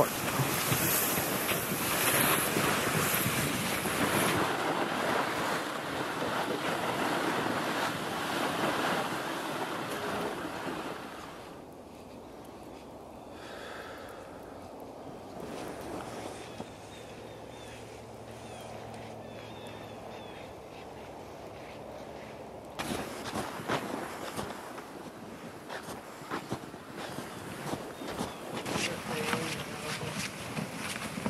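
Plastic ice-fishing sleds dragged over fresh snow, a steady scraping hiss with the crunch of footsteps. It is loudest at first, fades through the middle, and comes back close with many irregular crunches from about two-thirds of the way in.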